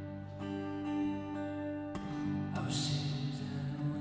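Acoustic guitar played live as a song's instrumental intro: picked chords ringing out, with new notes struck about once a second and a brighter strum near the end.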